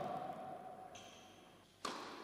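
Tennis ball striking the court or racket with a sharp impact whose ringing echo fades over about a second; a second impact comes near the end.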